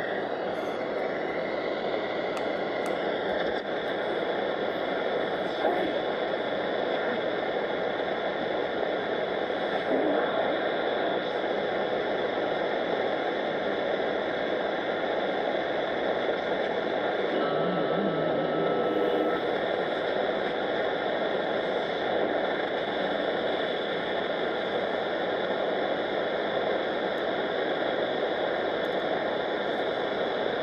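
Shortwave static hissing steadily from a Marc Pathfinder NR-52F1 multiband receiver's speaker while it is tuned around 10 MHz. A brief faint whistle comes a little past halfway.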